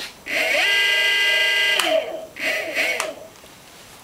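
Golden Motor BLT-650 brushless hub motor spinning up with no load on a 57-volt (15S) pack. It gives a rising electric whine that settles into a steady whine of many tones, cuts off suddenly, then comes back in a shorter, wavering burst.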